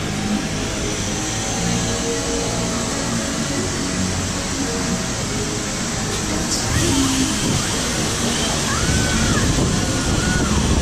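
Steady rush of wind buffeting the camera microphone as an Astro Orbiter rocket vehicle circles and climbs, with faint music underneath.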